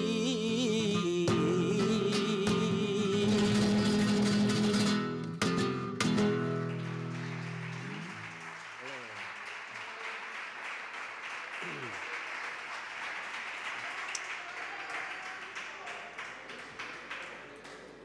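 Flamenco cantaor holding the last wavering note of a malagueña over Spanish guitar, the guitar closing with two strummed chords about five to six seconds in. Then audience applause for about ten seconds, fading near the end.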